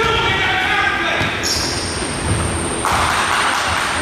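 A basketball dribbled on a gym floor during play, with voices talking in the background and a brief burst of noise about three seconds in.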